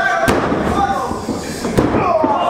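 Two sharp smacks in a wrestling ring, about a second and a half apart, as the wrestlers close in and lock up, over crowd chatter.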